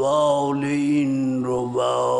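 A man's voice chanting in long notes held at a steady pitch. The first note lasts over a second and a half, then breaks, and a new note starts near the end.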